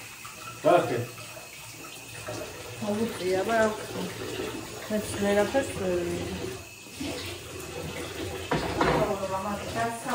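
Kitchen tap running into a steel sink, with a person's voice over it.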